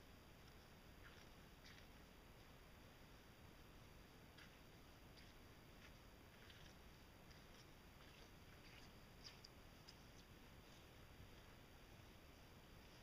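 Near silence: a low background hush with a few faint, very short high-pitched ticks scattered through it, the strongest about nine seconds in.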